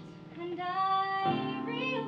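A woman singing a show tune over instrumental accompaniment, holding one long note in the first half of the phrase.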